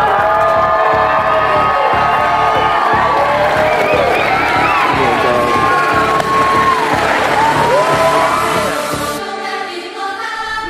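A crowd of wedding guests cheering, whooping and applauding, mixed with music that has singing. Near the end the crowd noise fades and the sound thins out.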